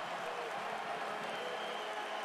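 Arena crowd applauding and cheering a home goal at an ice hockey game, a steady, even crowd noise.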